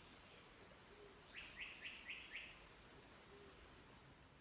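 A bird calling: a burst of rapid, high-pitched notes starting about a second in and lasting a couple of seconds, over a faint steady forest background.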